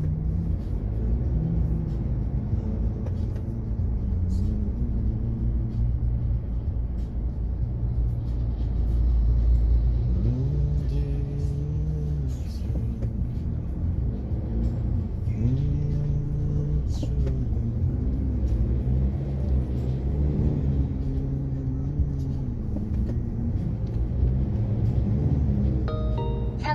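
Steady low road and engine rumble heard from inside a moving car on an expressway, with music playing over it; a melody line comes in about ten seconds in and recurs several times.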